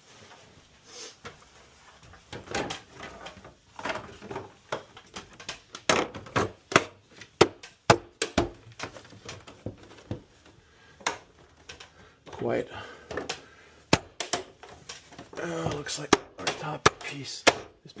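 Plastic front cover of a Mitsubishi ductless mini-split indoor unit being worked back onto the unit by hand: a run of sharp clicks, knocks and taps of hard plastic on plastic as it is pushed and snapped into place, with the cover being stubborn to seat.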